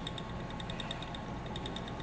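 Ashford Elizabeth 2 spinning wheel turning under the treadle: a steady low whir with a fast, even ticking running through it.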